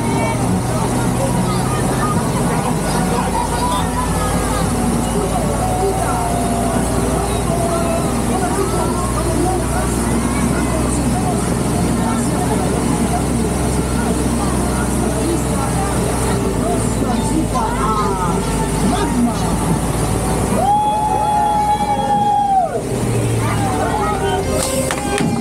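Voices chattering over the steady low hum of a ride vehicle. About 21 s in, a steady tone sounds for about two seconds and then cuts off suddenly.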